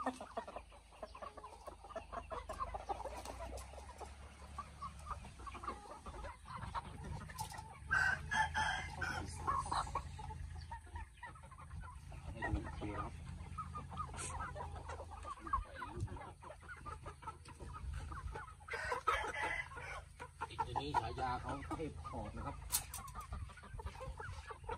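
Burmese game chickens clucking around the wire cages, with two louder, longer calls, one about eight seconds in and another about nineteen seconds in, typical of a rooster crowing.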